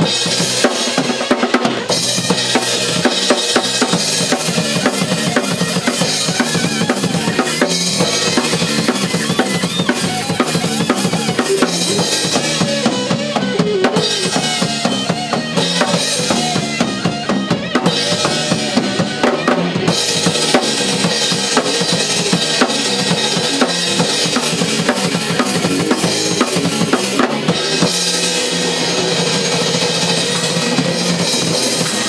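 A heavy metal band playing live: drum kit with bass drum, snare and cymbals driving the music, with electric guitar and bass guitar. The cymbals drop out for short stretches now and then.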